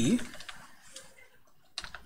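Computer keyboard being typed on: a quick burst of a few key clicks near the end.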